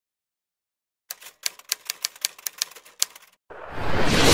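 Typewriter keystroke sound effect: about a dozen quick, uneven clicks over two seconds, starting about a second in. Near the end a rising whoosh swells up.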